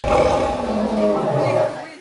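An animatronic Bisti Beast dinosaur roaring: one long, low, rough roar that lasts nearly two seconds and fades near the end.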